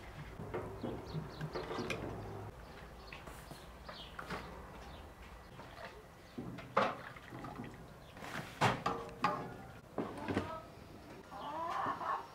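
Cabbage sloshing in a pot of hot water as a metal slotted spoon works against it. This is followed by several sharp knocks and clinks of kitchenware, and a short call with a bending pitch near the end.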